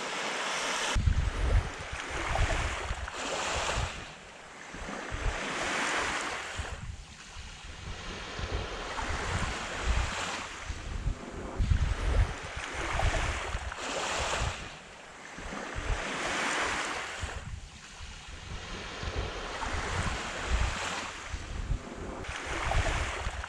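Small waves washing onto the shore, each one swelling and fading every few seconds. Wind buffets the microphone in low rumbles.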